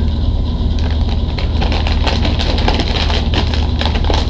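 Foil chip bag of Lay's potato chips crinkling as it is handled and torn open: a run of short, sharp crackles. Under it a steady low hum.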